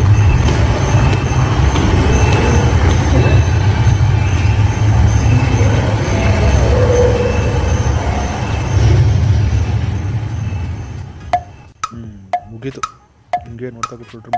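A loud, steady rushing noise with a deep rumble that fades away about eleven seconds in; then sharp, pitched knocks like a wood block begin, about two a second, in a steady percussion rhythm.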